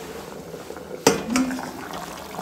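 Metal lid clanking on a kadai as it is lifted off the pan: one sharp clang about halfway through, then a lighter knock.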